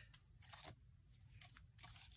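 Near silence, with a few faint short clicks and rustles from the yellow ribbon and scissors being handled as the ribbon is lined up for cutting.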